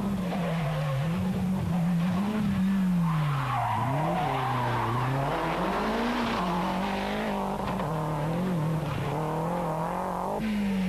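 Rally car engine at speed, its revs rising and falling again and again as it shifts up and brakes for corners.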